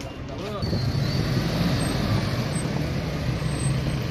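A motor vehicle running close by: a steady low engine rumble with road noise, which comes up about half a second in and then holds. A man's voice is heard briefly at the very start.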